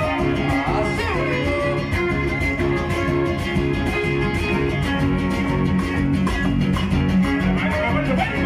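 A live guitar trio playing dance music over a sound system, loud and steady with a strong bass line.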